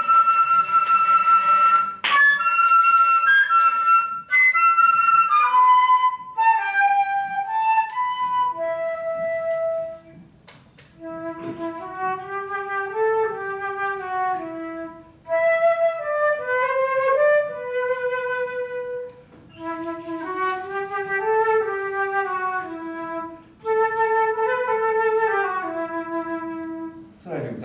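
A flute-like wind instrument playing a slow melody. It starts on high held notes, dips briefly about ten seconds in, then carries on in a lower register.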